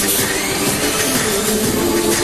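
Music playing, with held instrumental notes at a steady level.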